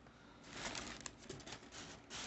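Faint rustling with several light clicks from about half a second in, the sound of someone rummaging through art supplies and their packaging.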